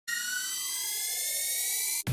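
A steady, high buzzing tone that rises slowly in pitch and cuts off suddenly at the end.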